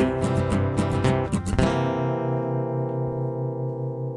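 Guitar strumming the song's closing bars. About 1.7 seconds in it lands on a final chord that is left to ring out and slowly fade.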